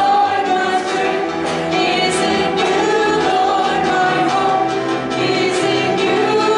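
Live worship song: women's voices singing a praise chorus with electric keyboard accompaniment, held notes and steady without a break.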